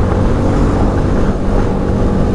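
BMW sport motorcycle's engine running steadily at road speed, heard from the rider's seat along with rushing wind and road noise.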